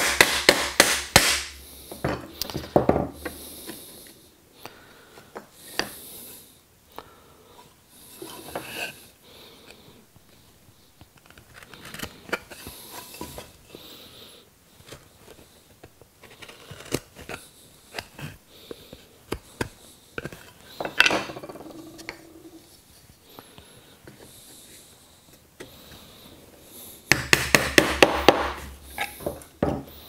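Quick hammer taps on a walnut dovetail joint, knocking the test-fitted pieces back apart, in the first second or so. Then scattered knocks and the rub of wooden pieces being handled, with another quick run of taps near the end.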